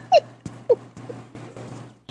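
A person laughing in short, falling bursts that trail off, over a steady low hum.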